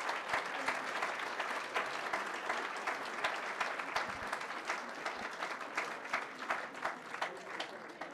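Audience applauding: dense, steady clapping from a crowd that slowly thins and fades toward the end.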